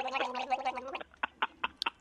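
A man choking in the throat: a strained, gurgling voiced sound held for about a second, then a run of short catches and gasps as he tries to clear his airway.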